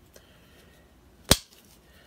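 A single sharp click about a second and a quarter in, from a Hammer brand Imperial Kamp King camp knife in the hand: an implement snapping on its backspring.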